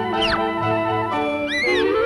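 Cartoon orchestral underscore with held notes. A quick falling squeak comes about a quarter second in, a short arching squeak follows near the end, and then a rising slide begins.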